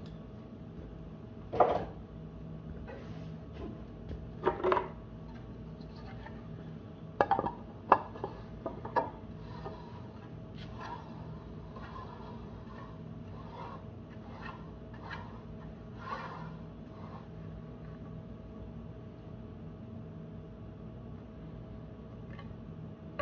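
Scattered clicks and knocks of metal and plastic speaker parts being handled as a JBL PRX800 tweeter's compression driver and horn are fitted back together, the sharpest knocks about a second and a half in and around eight seconds in. A steady low hum runs underneath.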